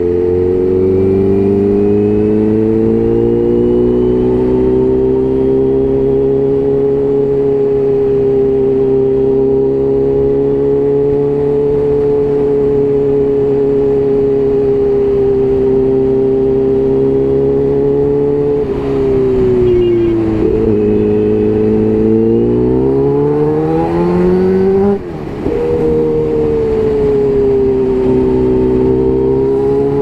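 Kawasaki Ninja H2's supercharged inline-four engine running at steady revs while riding. About two-thirds of the way in the revs fall, then climb again under acceleration, with a short break in the sound, a quick gearshift, about five seconds before the end before it settles again.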